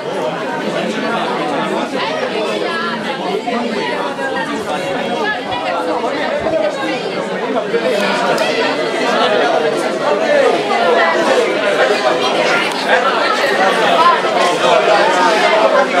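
Crowd chatter: many people talking at once in overlapping conversations, growing a little louder in the second half.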